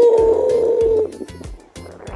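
A cow mooing once: a single call about a second long with a slightly falling pitch, over background music with a steady beat.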